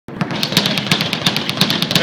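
Speed bag being punched, rattling against its rebound platform in a fast, even rhythm of about six sharp knocks a second with lighter knocks between.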